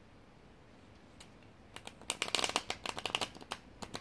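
Tarot cards being shuffled by hand: a single click about a second in, then a rapid run of card snaps for about two seconds.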